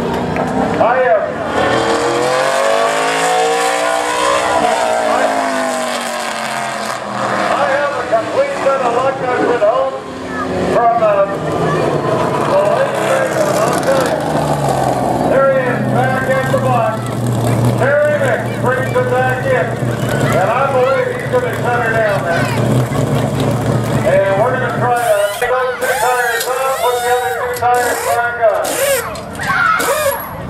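NASCAR Canadian Tire Series stock car's V8 engine going past on the oval, its pitch rising and then falling, then running at low revs with a steady rumble as it rolls into the pit. Near the end come short, sharp bursts of a pneumatic impact wrench as the pit crew changes the tires.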